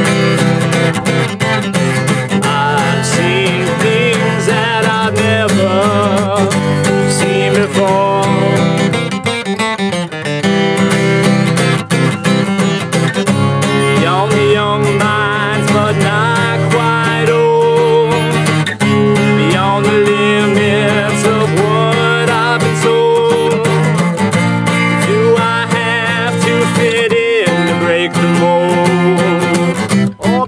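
Steel-string acoustic guitar strummed, with a man's wordless singing gliding up and down over it.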